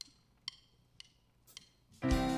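Four faint, evenly spaced stick clicks, about two a second, counting in the band's tempo just before the song begins.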